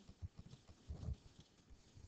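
Faint low thumps and bumps of handling noise near the microphone, a few early on and a cluster about a second in.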